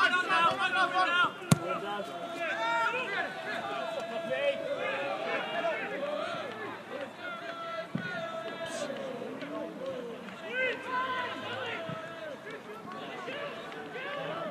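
Shouts and calls of several voices on an outdoor football pitch, with one sharp thud of a football being kicked about a second and a half in.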